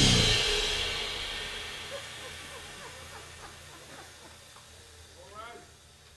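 The final cymbal crash and last note of a jazz band fade out in the club's reverberation over several seconds. A few faint voices come up near the end.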